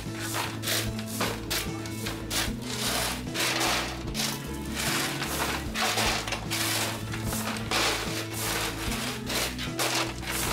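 Shovels scraping and scooping gravel in repeated, irregular strokes, under background music with steady chords.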